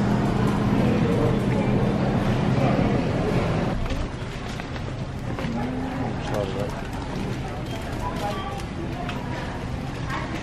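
Grocery store ambience: a general murmur of shoppers' voices in the background, with a steady low hum that drops away about four seconds in.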